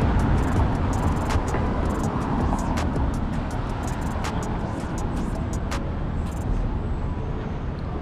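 City street traffic noise: a steady low rumble of passing vehicles, with sharp ticks scattered through it.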